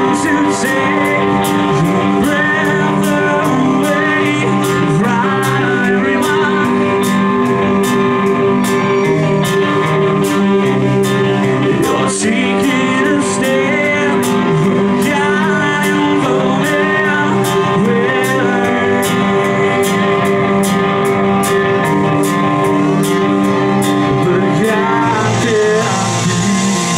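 Live rock band playing loud and amplified: electric guitars, bass and drum kit with a steady beat.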